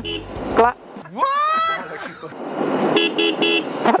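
Royal Enfield Interceptor 650's horn sounded in three short, quick toots near the end.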